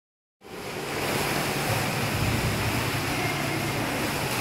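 Steady wash of water noise in an indoor swimming pool, with a low hum underneath, starting about half a second in.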